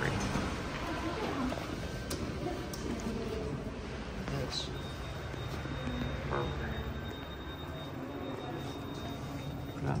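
Indistinct background voices over a steady low hum in a large building. A faint high steady tone runs from about five seconds in until near the end.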